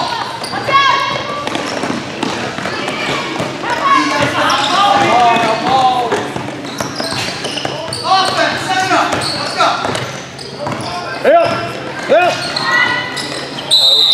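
Basketball bouncing on the court as it is dribbled, amid players' and spectators' voices and shouts echoing in a large gym. Near the end spectators shout "Air! Air!" and laugh, the taunt for a shot that missed everything.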